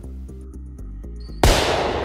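A balloon bursting inside a hardened plaster-bandage shell: one sudden loud pop about one and a half seconds in, with a short rush of noise after it, over soft background music.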